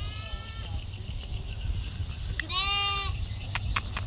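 A lamb bleating once, a single call of under a second about two and a half seconds in, followed by a few short clicks near the end.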